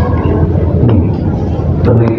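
A man's voice over a hall's microphone and speakers, saying a short word, over a steady low hum.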